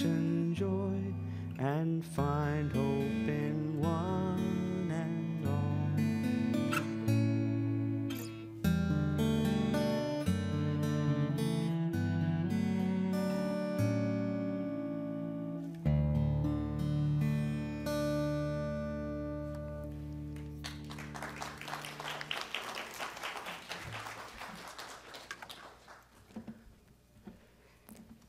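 Acoustic guitar strummed over a bass line, the instrumental close of a worship song. About sixteen seconds in it settles on a long held low chord that dies away, and a soft hissing rustle then fades out near the end.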